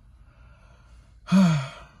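A man's sigh about a second and a half in: a short, loud, breathy exhale whose voice falls in pitch, after a quiet first second.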